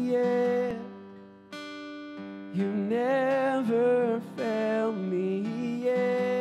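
A man singing a slow worship song to his own strummed acoustic guitar. His voice drops out about a second in while a new guitar chord rings, then the singing comes back.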